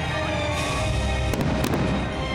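Fireworks going off over music: a rush of noise starts about half a second in, with a few sharp cracks about a second and a half in.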